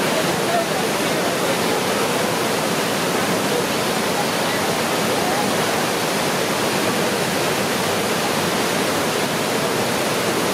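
Water rushing over a river weir in high, churning flow: a loud, steady roar that does not let up.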